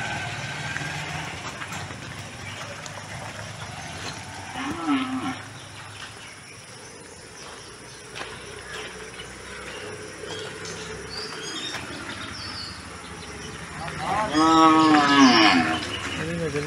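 A cow mooing: one long call near the end that rises and then falls in pitch, with a shorter, fainter sound about five seconds in.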